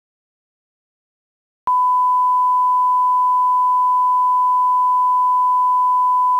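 Steady 1 kHz reference test tone of a video leader played with SMPTE colour bars, a single unwavering pure tone that starts abruptly about two seconds in.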